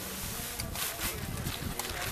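Wind buffeting the microphone outdoors: a steady low rumble with a brief stronger gust about a second in.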